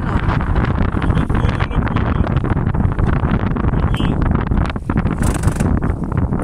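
Wind buffeting the microphone on an open boat in a steady, loud rumble, with a short hiss about five seconds in.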